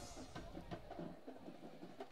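Faint music from a band in the stands: a few scattered drum hits after held notes die away at the start.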